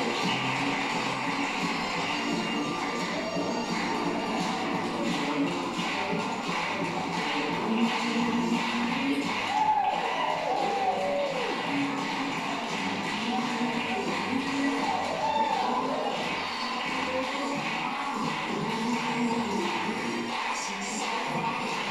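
Upbeat music for jive dancing playing steadily in a large hall, with dancers' footsteps on the floor.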